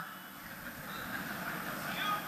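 Faint, steady background noise of the venue's ambience during a pause in a speech, growing a little louder toward the end.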